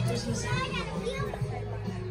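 Voices of people in the store over background music.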